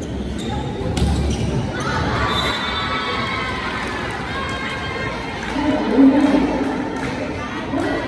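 A volleyball being struck during a rally in an echoing gym, with a sharp hit about a second in, over crowd noise and players and spectators shouting.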